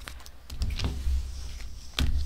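Tarot cards being shuffled by hand, with a few faint card clicks over a low rumble of hands handling the deck near the table, swelling in the middle.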